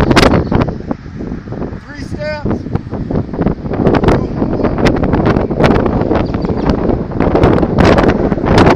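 Wind buffeting the microphone: a continuous low rumble with crackling pops, louder in the second half.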